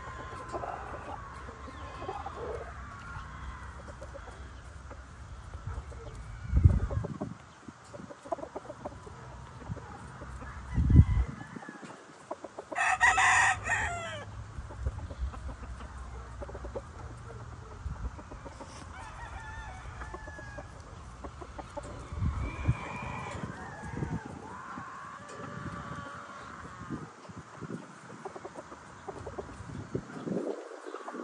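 Roosters in a yard: one crows once, loud and high, about halfway through, with scattered softer clucking and calls around it. Two dull low thumps come shortly before the crow.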